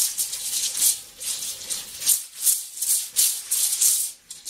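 Rhythmic shaker rattle, about four shakes a second, high and hissy, in a music track.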